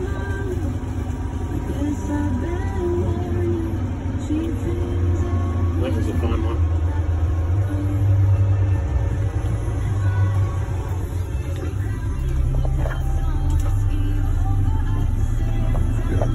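Mack roll-off truck's diesel engine running under way, a steady low rumble heard from inside the cab that swells for a few seconds about halfway through. Radio music plays over it.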